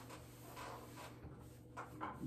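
Faint rubbing of a sponge wiping liquid sealer across wall tile.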